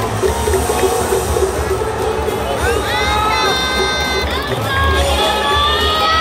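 Large baseball stadium crowd cheering while music plays over the public-address system, with a rhythmic low pulse underneath. Two long, held pitched tones stand out, one about halfway through and one near the end.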